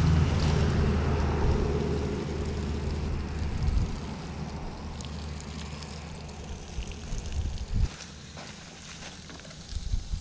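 Liquid sprinkling from a plastic watering can's rose onto wood-chip mulch, with wind rumbling on the microphone. The sound is loudest at first and fades gradually.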